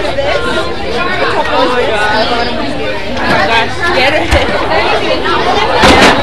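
Several people's voices chattering over one another close by. A single sharp knock comes near the end.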